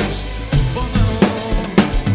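Acoustic drum kit played along to a recorded Greek pop song during an instrumental passage: bass drum, snare and cymbal hits about twice a second over the backing band.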